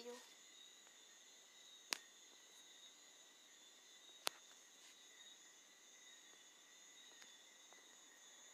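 Near silence with a faint, steady high-pitched hum and two sharp clicks, about two and four seconds in.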